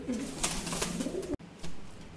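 Siraji pigeon cooing: low, rolling coos that cut off abruptly about a second and a half in, with a short burst of sound just after.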